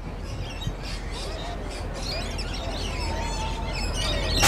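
Small birds chirping and twittering in quick, short calls over a steady low outdoor rumble.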